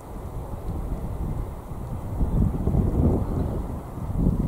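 Wind buffeting the camera microphone: an uneven low rumble in gusts, swelling about two seconds in.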